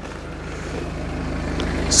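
BMW 3 Series two-litre four-cylinder engine idling, a steady low hum that grows slowly louder.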